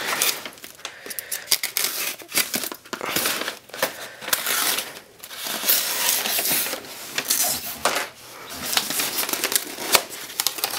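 Crumpled packing paper crinkling and rustling while a styrofoam case is handled and pulled open, with scattered small clicks and knocks.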